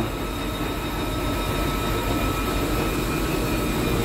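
Commercial tumble dryer running: a steady, even mechanical rumble of the turning drum and blower.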